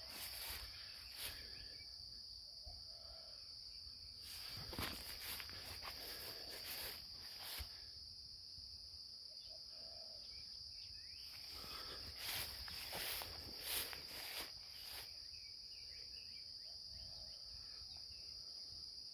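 Insects keeping up a steady, high-pitched trill, with faint soft rustles and knocks in two clusters, a few seconds in and again past the middle.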